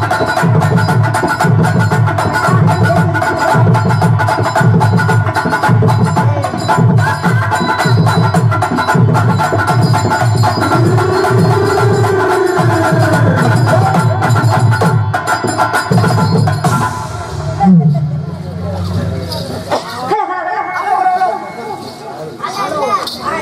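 Live folk-drama band music: tabla and drum kit beating a steady rhythm under held chords. The music breaks off about seventeen seconds in, and voices follow near the end.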